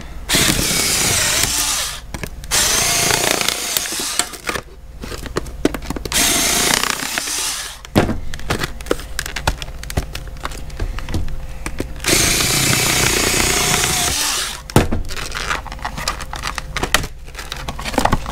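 Small Warrior cordless power cutter running in several spells as it slices through a stiff plastic clamshell blister pack. The motor's whir mixes with the crackle and snap of the plastic, with the longest run about twelve seconds in.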